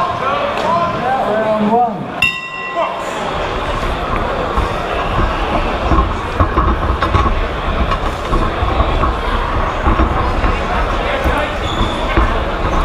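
A ring bell gives one short steady tone about two seconds in, starting the round. Crowd shouting and voices follow, with low thuds from the boxers' footwork and punches.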